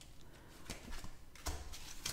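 Faint rustling and soft clicks of tarot cards being handled as they are separated from the deck, with a slightly louder tap about one and a half seconds in.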